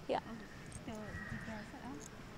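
A woman saying "yeah, so" and then laughing softly, her voice wavering up and down in pitch.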